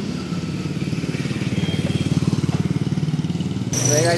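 A motorcycle engine running close by, a steady low rapid putter that swells slightly toward the middle and cuts off abruptly near the end.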